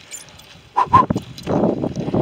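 A cyclist breathing hard while pedalling uphill, with two short, loud high-pitched sounds close together about a second in.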